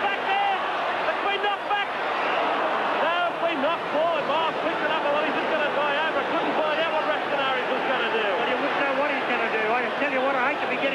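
Large stadium crowd shouting and cheering, many voices overlapping at a steady level.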